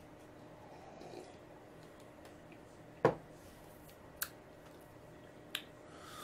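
Three short, sharp clicks over a quiet room as a sip of beer is tasted: mouth smacks, and a glass set down on the bar top. The first click, about halfway through, is the loudest, and the other two follow about a second apart.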